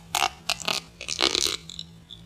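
Close-miked mouth sounds of sea grapes being bitten and squashed between the teeth: a quick cluster of wet crackling pops lasting about a second and a half.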